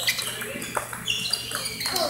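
Table tennis rally: the ball clicking sharply off paddles and table, several hits about half a second apart.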